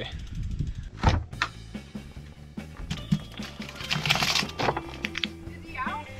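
Background music playing throughout, with a single sharp clunk about a second in as a door in the camper is pulled open, and a short noisy burst around the middle.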